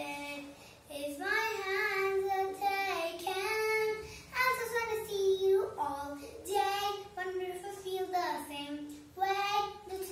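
A young girl singing solo, in phrases of long held notes with short breaks for breath between them.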